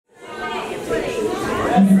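Several people chattering in a large, echoing hall, fading in from silence at the start.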